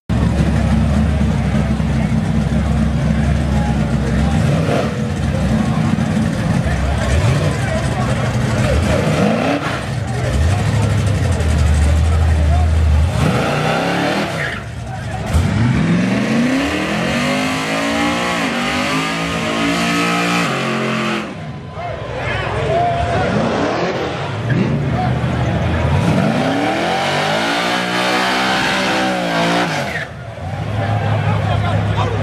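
Car engines at a car show. For the first dozen seconds there is a steady low rumble, then an engine is revved hard twice: each rev climbs and falls over several seconds.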